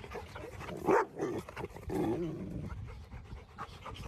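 Rottweiler panting, with a brief louder vocal sound about a second in and a short wavering pitched sound around two seconds in.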